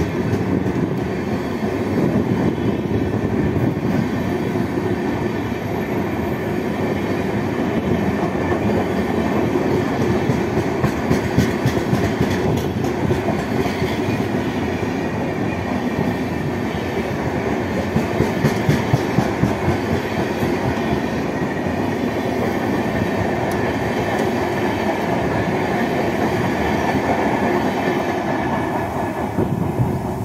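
Railway coaches running past close by: a steady loud rumble of wheels on rail. Twice, about a third of the way in and again past halfway, it breaks into runs of rapid clickety-clack as the wheels cross rail joints.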